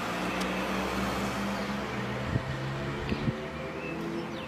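Steady low hum and background noise with faint held tones, and a few soft knocks in the second half.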